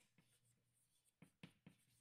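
Chalk on a blackboard as an equation is written: faint, short taps and scrapes, a few strokes in quick succession in the second second.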